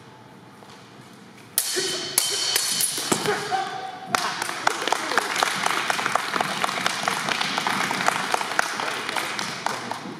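A few sharp clacks of fencing weapons striking, starting about a second and a half in, then a crowd applauding in a large, echoing gym hall.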